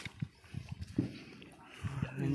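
A sharp click, then a few soft, low thumps: a fisherman hauling in a hand line at the edge of a rocky riverbank.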